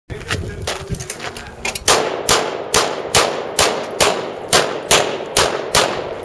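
Handgun firing a string of about ten shots, evenly spaced at roughly two a second, starting about two seconds in. A few fainter sharp cracks come before the string.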